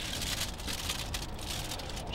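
Wind rumbling on the microphone with crackling noise over it.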